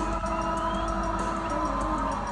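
Live concert music through a crowd recording: sustained synthesizer tones with a short rising, siren-like sweep near the start.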